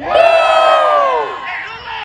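Crowd of people cheering and yelling together, many voices held for about a second and then falling in pitch and fading out.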